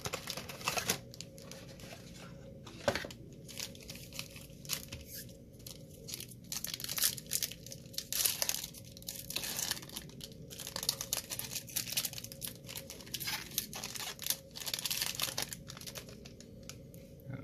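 A Donruss basketball card pack's plastic wrapper being torn open and crinkled by hand: a long run of crackles and sharp little rips.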